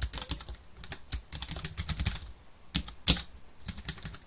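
Computer keyboard being typed on: a quick run of keystrokes for about two seconds, a short pause, then a few more strokes, one of them sharper and louder than the rest.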